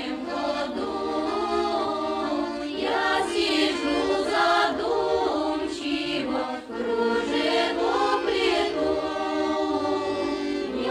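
A Russian folk choir of women's voices singing a song in several parts, with a short break between phrases about six and a half seconds in.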